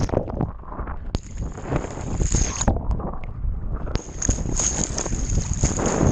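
Sea water sloshing and splashing around a camera held at the surface while swimming, dull and muffled when the lens is under water and turning into a bright hissing splash as it breaks out, about a second in and again about four seconds in. A low rumble of water and wind on the microphone runs underneath.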